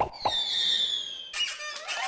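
A novelty sound effect: a sudden squeak, then a high whistle falling in pitch over about a second. A second noisy burst follows near the end.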